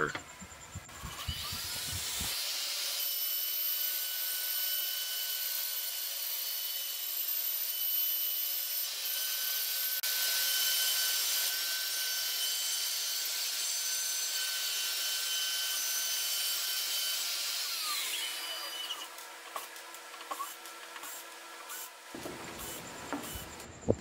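CNC router spindle with a quarter-inch down-shear bit cutting a contour through melamine-faced board, a steady high-pitched whine with cutting noise. It spins up about a second in and winds down with a falling pitch a few seconds before the end.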